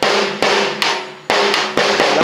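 Snare drum struck with wooden drumsticks, with the sticks catching the rim as well. About six hits land in two seconds, coming closer together in the second half, and each rings on briefly.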